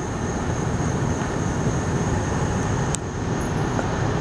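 Inside a car's cabin while driving slowly in traffic: the steady hum of engine and tyre noise, with one brief click about three seconds in.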